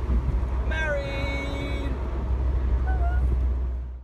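Wind buffeting the microphone and road noise in an open-top Mini convertible at speed, a steady low rumble. About a second in a person's voice holds one long note, with a short voiced sound near the end, as the audio fades out.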